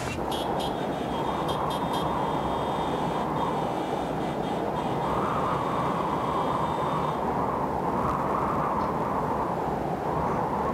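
Soundtrack of a projected animation, played through a hall's speakers: a steady low rumbling rush of noise that holds at an even level.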